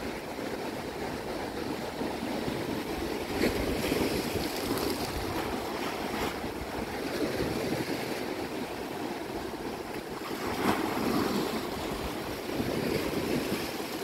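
Ocean surf breaking and washing in, a steady rushing that swells a couple of times.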